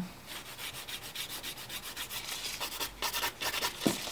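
A hand nail file rasping back and forth over an extended nail in quick, even strokes during the final filing and shaping.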